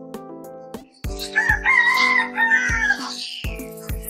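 A rooster crowing once, for about two seconds, over background music with a steady low drum beat.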